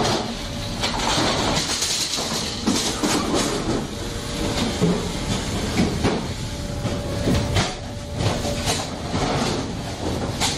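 Belt and roller conveyors running through a packaging machine: a steady mechanical rumble and hiss with frequent irregular clanks and knocks.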